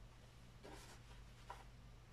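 Near silence: room tone with a faint rustle and a soft click about a second and a half in.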